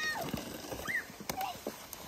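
A plastic sled scraping and rustling over snow and dry leaves as its rider slides down a slope, with scattered small clicks and a brief high voice sound about a second in.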